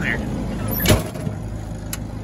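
A sharp metal clunk about a second in and a lighter click near the end as someone climbs into the cab of an orange loader, over the steady low hum of an engine running.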